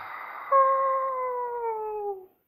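A child's voice holding one long wailing cry that slowly falls in pitch, starting about half a second in.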